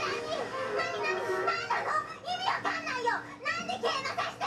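Japanese anime voice acting: high-pitched young female voices speaking quickly in subtitled dialogue.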